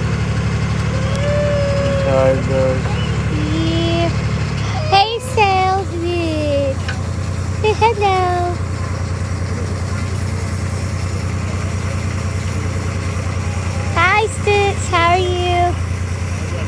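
Engine of the tractor pulling a hayride wagon, running as a steady low drone. Several short wordless vocal cries and squeals that glide up and down sound over it, loudest about five seconds in and again near the end.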